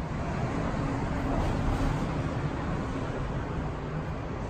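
Steady outdoor street noise: an even rush with a faint low hum, as of traffic passing in a town street.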